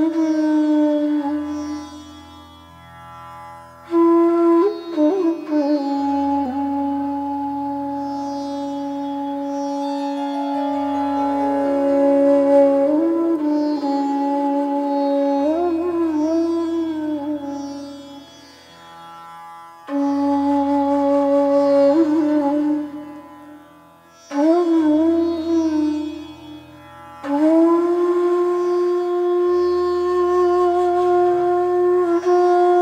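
Bansuri (Indian bamboo transverse flute) playing a raag in slow phrases of long held notes with sliding pitch bends and ornaments, with brief pauses between phrases. Beneath it runs a low steady drone.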